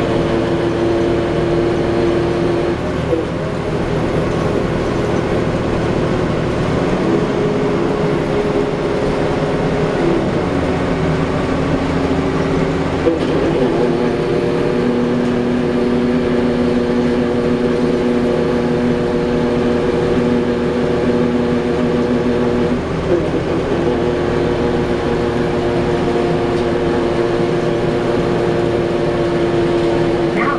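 Cummins ISL diesel engine and Allison B400R automatic transmission of a 2010 Gillig Low Floor BRT bus, heard from inside the passenger cabin while driving: a steady drone and whine that steps in pitch several times, as with gear changes and changes in road speed.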